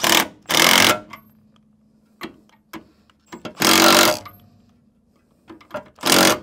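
A socket wrench tightening the shock absorber mounting bolt on a Land Rover Defender's rear axle, in three short loud bursts of rapid rattling with a few light clicks between.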